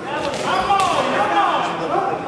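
Voices calling out in a large, echoing hall, with a couple of sharp thuds in the first second.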